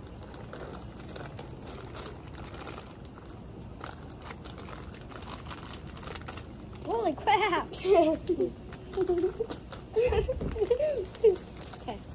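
Plastic inner bags of cornstarch crinkling as they are handled and emptied into a mixing bowl, a stream of small crackly ticks. Laughter and talk come in past the middle, with a short low thump near the end.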